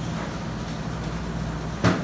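A steady low machine hum, with one sharp knock near the end.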